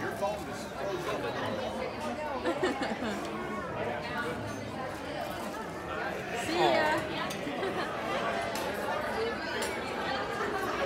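Indistinct chatter of many diners' voices in a busy restaurant dining room, with one louder voice rising above it about two-thirds of the way through.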